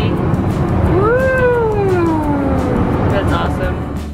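A young child's long whining cry, rising in pitch and then sliding slowly down, over the steady noise of an airliner cabin.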